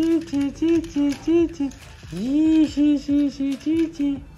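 A person's voice chanting a rhythmic string of short sung syllables, about five a second, with one longer rising note about two seconds in.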